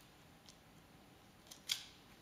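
A cat's claws catching on a sisal-rope scratching post: a faint tick about half a second in, then a short, sharp scratch near the end.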